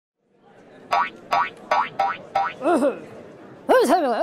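Short musical logo jingle: five quick plucked notes in a row, then bouncy, wobbling pitch-bending tones near the end.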